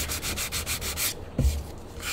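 Hand sanding of a wooden test board, a light sanding with a sanding block in quick back-and-forth strokes that stop after about a second, followed by a dull knock.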